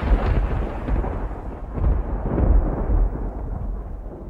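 Explosion sound effect: the deep, rumbling tail of a blast that swells again about two seconds in, then fades away.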